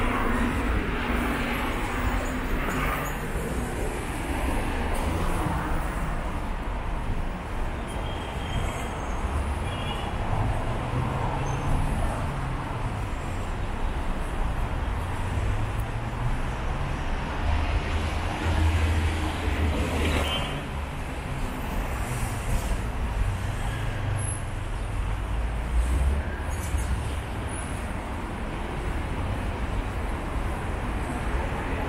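Steady city road traffic: a continuous low rumble of passing cars, with a few louder vehicles swelling past now and then.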